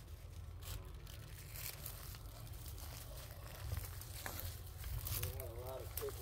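Quiet stretch of low rumble and faint rustles and clicks from a hand-held phone microphone, with a faint voice near the end.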